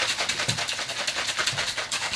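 A plastic shaker bottle being shaken hard, its contents sloshing and knocking in a fast, even rhythm.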